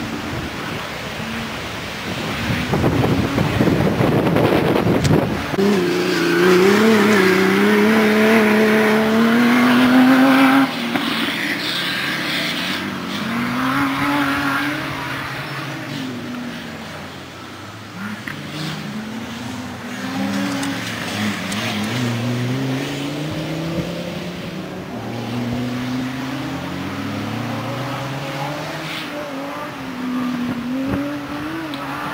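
Land Rover Defender-type 4x4 driven hard off-road, its engine revving up and easing off again and again. The pitch climbs for several seconds and then drops suddenly before rising again, as the driver changes gear or lifts off. A rough rushing noise comes briefly near the start.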